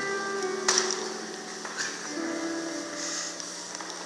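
Electronic keyboard playing soft, sustained chords, moving to a new chord about two seconds in. A sharp knock sounds just under a second in.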